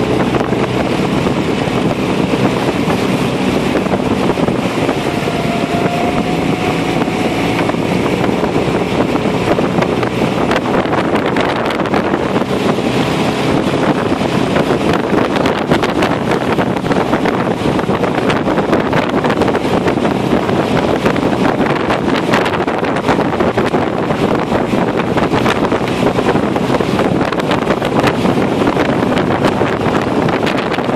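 A boat motor running steadily, with wind buffeting the microphone.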